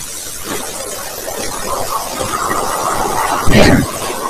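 Water running steadily from a tap as hands are washed, with a brief louder sound near the end.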